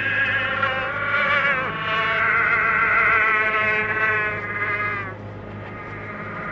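A buzzy pitched sound with a wavering vibrato and many overtones, over a steady low hum. It glides down once early on, holds its notes, then drops away about five seconds in.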